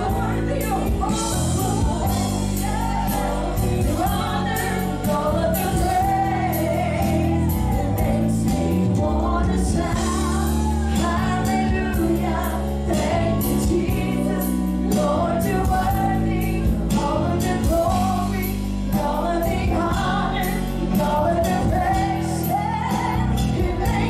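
Live gospel worship music: singing over keyboard, bass guitar and a drum kit, with steady cymbal and drum strokes throughout.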